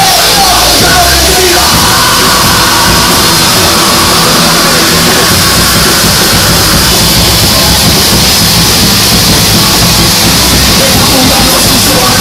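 A loud live rock band with a full drum kit, playing at high volume, the sound dense and near full scale.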